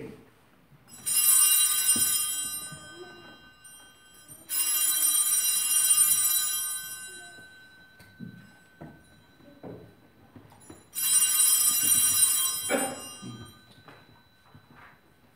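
Sanctus bell rung three times, each a bright ringing of a second or two that dies away, marking the consecration of the wine at the altar.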